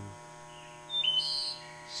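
A single short, high bird chirp about a second in, over a faint steady hum.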